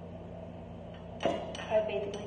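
Stainless steel mixing bowl knocking against the countertop twice, a little past a second in and again half a second later. Each knock leaves a short metallic ring, and the second is the louder.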